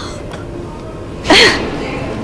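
A person's short, loud vocal outburst about a second and a half in, over steady background noise.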